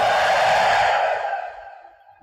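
The echo of a man's long chanted note through a public-address system, left ringing after his voice stops and fading away over about a second and a half.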